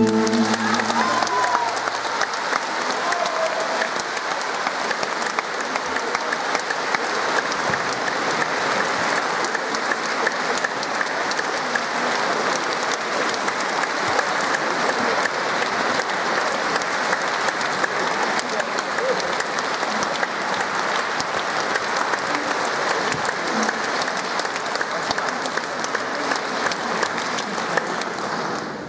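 Audience applauding steadily and at length, with the band's last chord dying away in the first second or two.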